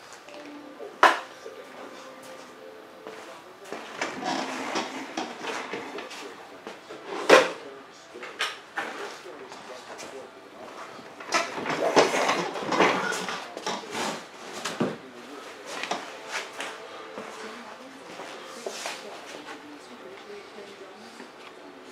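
Clicks, knocks and clatter of small tools and parts being handled at a workbench, in irregular bursts, with a sharp knock about a second in and another near the middle.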